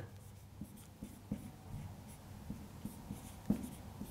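Marker pen writing on a whiteboard, a few short faint strokes.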